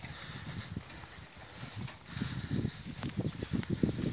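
A pony's hooves on grass and the rattle and knock of the four-wheeled carriage it is pulling, growing louder and busier about halfway through as it passes close by.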